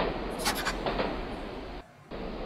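Steady rough rolling noise of a train sound effect as the cartoon train moves along, with a couple of short sharp bursts about half a second in. It drops out briefly just before the end.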